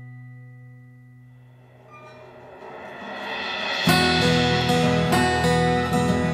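Instrumental passage of an acoustic folk song. A held chord fades away, a swell builds from about two seconds in, and about four seconds in the full band comes in loudly with strummed acoustic guitar, violin and percussion hits.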